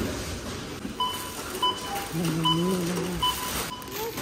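Supermarket checkout barcode scanner beeping as items are scanned: four short, high beeps under a second apart, one for each item read.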